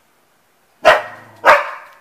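A dog barking twice, loud and sharp, about half a second apart.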